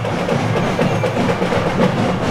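Percussion-led music with a quick, steady beat of drums and sharp wood-block-like clicks.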